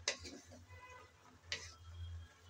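Wooden spatula knocking against the pan while stirring cooked greens, two short sharp knocks about a second and a half apart.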